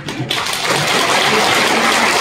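Audience applauding, building up within the first half-second and then holding steady and loud.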